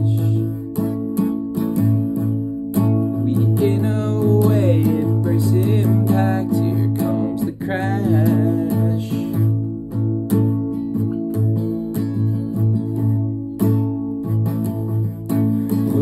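Acoustic guitar strummed steadily through an instrumental stretch of a song, with a couple of brief wordless vocal lines over it, about four and eight seconds in.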